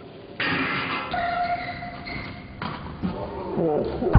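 A BMX bike lands hard on concrete about half a second in, followed by tyre noise as it rolls away. Shouted voices come near the end.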